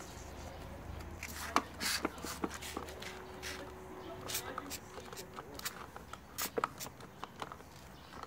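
Irregular clicks and crinkles of a thin clear plastic seedling tray being handled while soil is pressed into its cells, a few louder cracks among them.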